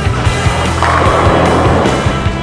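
Background rock music with a steady beat, over the rolling rumble of a bowling ball travelling down the lane. A noisy rush in the rolling sound grows louder about a second in.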